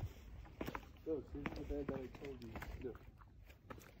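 Footsteps on concrete steps, a scattering of light scuffs and taps, under a faint voice talking briefly twice.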